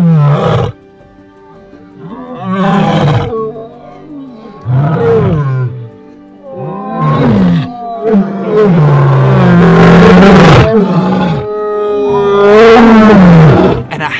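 A pride of lions roaring together in a series of loud, overlapping roars, each falling in pitch, building to the longest and loudest roars in the second half. This chorus of roaring after hours of dominance fights is taken by their keeper as the sign that the pride has settled its ranks.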